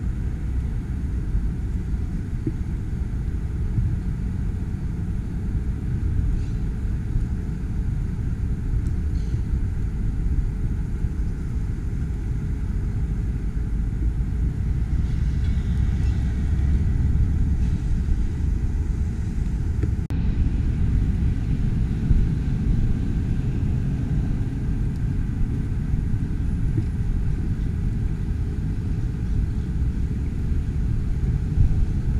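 Steady low outdoor rumble with no distinct events, briefly broken about two-thirds of the way through.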